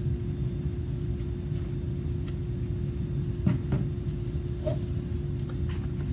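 Steady low rumble with a constant hum from machinery running in the room. A few light knocks and clicks come through it as plastic soap pitchers are handled on a stainless steel table.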